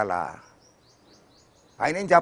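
Small bird chirping faintly in the background: a quick run of short, high, falling notes, heard in a pause between a man's sentences.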